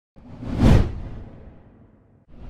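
A whoosh sound effect for an animated title: it swells in just after the start, peaks in under a second with a deep low end beneath it, and trails away over the next second.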